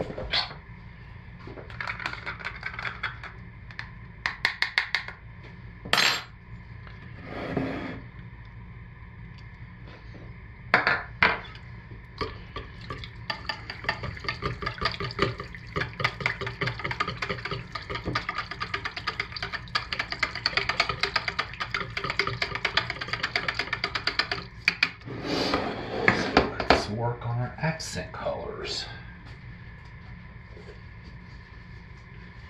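Soap batter being stirred by hand in a plastic pitcher to mix in titanium dioxide for a white colour. A few separate taps and knocks of the utensil against the pitcher come first, then a long run of rapid clicking stirring strokes through the middle, and a louder scrape and clatter near the end.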